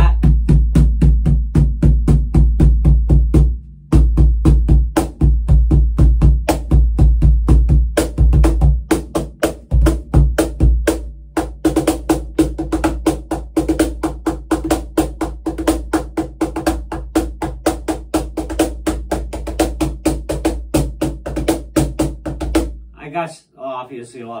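Pearl Music Genre Primero box cajon played with the hands: a fast, steady groove of deep bass strokes and sharper slaps on the meranti face plate, with the buzz of its fixed curly snare wires. The first half leans on the deep bass tone; after a short break about eleven seconds in the strokes turn lighter and brighter, and the playing stops near the end.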